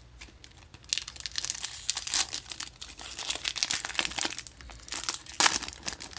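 Foil wrapper of a Magic: The Gathering Kaldheim collector booster pack crinkling and tearing as it is peeled open by hand, starting about a second in, with a louder burst near the end.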